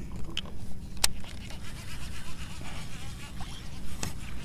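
A steady low motor hum, with a single sharp click about a second in.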